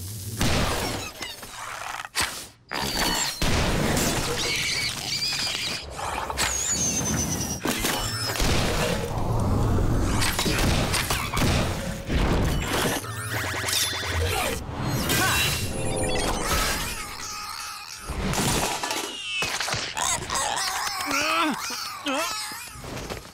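Cartoon action sound effects: a rapid series of impacts, crashes and shattering, with gliding electronic effects over a dramatic music score.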